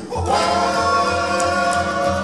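Live cowboy-band music: several male voices hold one long sung harmony chord, coming in just after a brief dip at the start, over accordion, fiddle, acoustic guitar and upright bass.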